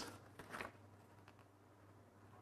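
Near silence: quiet room tone with a faint low hum, and a faint rustle of the paper pages of a small instruction booklet being handled about half a second in.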